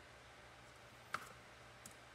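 A sharp click about a second in and a fainter one near the end, over quiet room tone: plastic paint cups being handled and knocked against the table.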